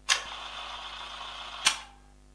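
Instant-camera sound effect: a sudden start into a steady mechanical whir of the print-ejecting motor for about a second and a half, ending in a sharp click.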